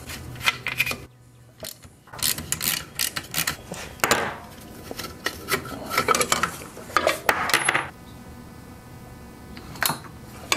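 Sheet-metal muffler being handled and worked off a small two-stroke tiller engine, giving irregular metallic clinks and rattles.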